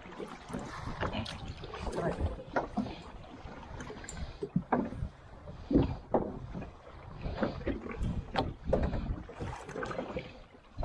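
Wind buffeting the microphone and choppy waves slapping against the hull of a small boat, with irregular knocks and splashes throughout.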